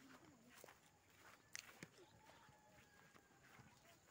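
Near silence, with a few faint footsteps on grass; the sharpest steps come about a second and a half in.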